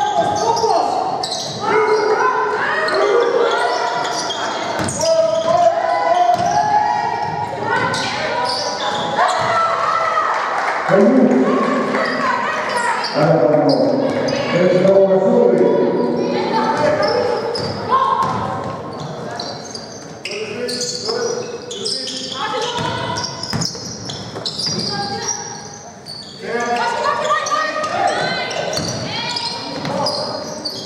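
Basketball bouncing on a hardwood court during live play, with players' and coaches' voices calling out almost without pause, echoing in a large hall.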